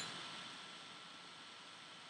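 Faint room tone: a steady low hiss from the recording, with a faint constant hum.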